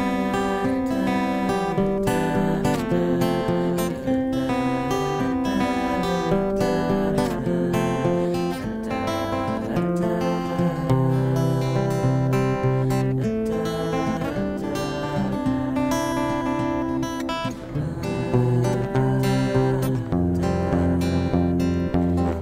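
Acoustic guitar music, chords strummed and picked at a steady level.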